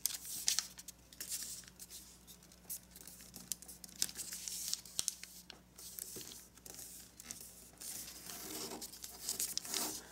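A sheet of kami origami paper rustling and crinkling in the hands as a diagonal valley fold is folded and creased, with many small irregular crackles.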